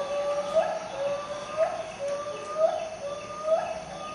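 A repeated bird call, about once a second: a held tone that swells and rises briefly each time, four times over.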